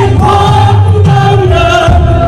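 Loud live band music with singing: held, sliding vocal lines over a steady bass, with many voices singing together.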